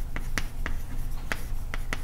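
Chalk on a blackboard as a formula is written: a quick series of about six short, sharp taps and scratchy strokes.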